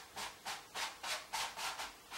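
Wide flat bristle brush stroking quickly back and forth across a wet oil-painted canvas: a steady run of short swishing strokes, about three or four a second.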